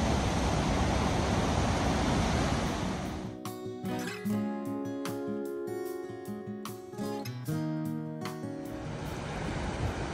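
Steady rush of whitewater rapids on the Potomac River at Great Falls. About three seconds in it cuts out and background music with held notes plays, and the rushing water returns near the end.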